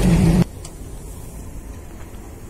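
Loud rumble of a train rolling past close by, with a wavering low tone, cut off suddenly about half a second in. A faint low rumble follows.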